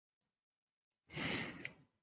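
A person sighing: one short breath out close to the microphone, starting about a second in and fading within a second.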